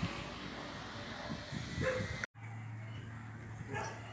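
A dog barking a few short times over steady background noise. The sound drops out for a moment just past halfway, and a low steady hum follows.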